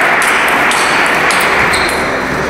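A table tennis ball clicking off rubber-faced bats and the table a few times during a rally, over a loud, steady hiss of hall background noise.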